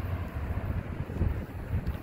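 Steady low rumble of a freight train's autorack cars rolling along the track, mixed with wind buffeting the microphone.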